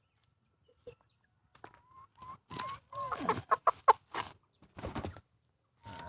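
Pama chickens clucking: a run of short calls that starts about a second and a half in, comes thick and fast in the middle and stops near the end.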